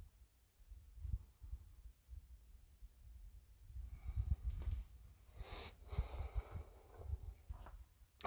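Faint, irregular low thumps and rumble from a handheld camera being moved about in a small room, with a soft rustle about halfway through.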